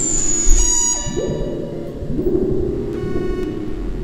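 Buzzy electronic synthesizer tones from a live hardware rig: a thin high tone that stops about a second in, and low notes that glide up into place at about one and two seconds in.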